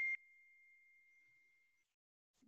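A single high, steady ringing tone. It drops suddenly to a faint tail a moment in, then fades away.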